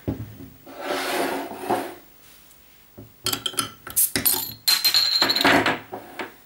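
A glass beer bottle's metal crown cap being pried off, followed by a run of sharp clinks of metal and glass on a table. One clink leaves a brief ringing tone like a struck glass.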